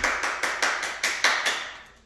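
Hands clapping in quick, even claps, about six a second, that fade out near the end.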